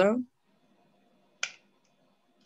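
The end of a spoken question, then a single sharp click about one and a half seconds in.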